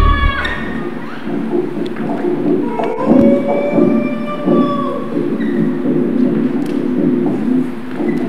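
A short musical jingle ends in the first second. Then comes a dense low drone with long held, wavering tones over it, the amplified sound of a live dance performance.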